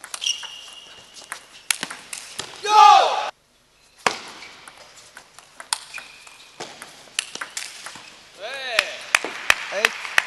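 A table tennis doubles rally: the celluloid ball clicks sharply off bats and table in quick exchanges. Players shout loudly as points are won, about three seconds in and again near the end.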